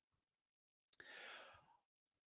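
Near silence, with one faint exhaled breath about a second in, lasting about half a second.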